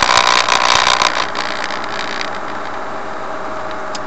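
Engine and road noise of a vehicle driving along a road, heard from inside the cab. It is louder and rougher for about the first second, then settles to a steadier run.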